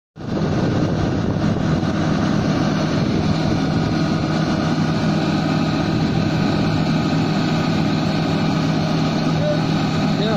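Diesel engine of a Komatsu PC350 LC excavator running steadily under hydraulic load with a constant, even hum while the boom is lowered and the bucket set on the ground to brace the machine for unloading.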